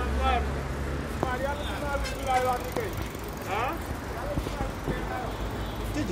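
Indistinct voices talking in short phrases, over a low rumble of street traffic.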